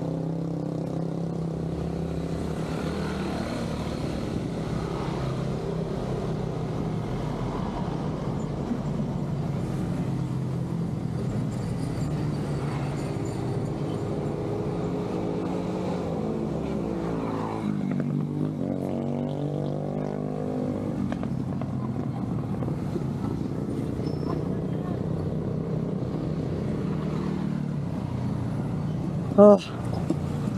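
Engine of a nearby motor vehicle running steadily at low speed, its pitch shifting and sweeping a little past the middle.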